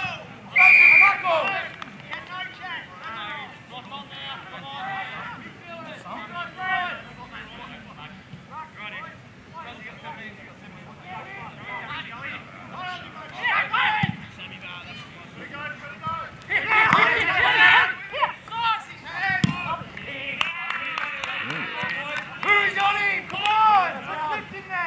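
Spectators and players shouting and calling out over a steady babble of voices, with the loudest shouts about a second in, around the middle and a little after. A short shrill steady tone sounds about a second in.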